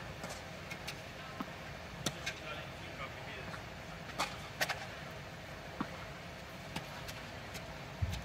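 A tennis ball being struck by rackets and bouncing on a hard court in a rally: sharp single pops about every second or two, a quick pair a little after the middle. Under them runs a steady background hum.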